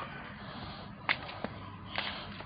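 Two short, sharp clicks about a third of a second apart over a steady background hiss; the first is the louder.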